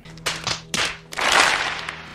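A crowd's hands smacking: a few separate sharp slaps, then a dense clapping-like burst of many hands for about a second.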